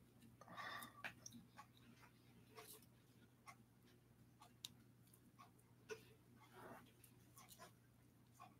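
Near silence: room tone with a faint steady low hum and scattered faint small clicks.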